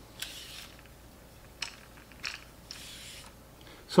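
Telescoping GoPro extension pole being pulled out by hand: soft sliding scrapes of its sections and a few small, sharp clicks.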